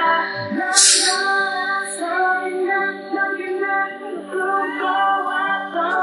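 Young male voices singing a K-pop song live through headset microphones, with the instrumental backing track removed so mainly the vocals remain. A short hissing burst comes about a second in.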